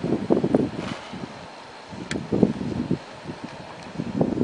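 Wind buffeting the microphone in irregular low gusts, strongest in the first second and again about halfway through.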